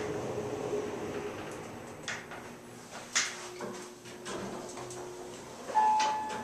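Montgomery traction elevator car running, with a steady hum and a faint whine that shifts lower partway through, and a couple of sharp clicks about two and three seconds in. Near the end an elevator chime rings once, the loudest sound, as the car reaches a floor.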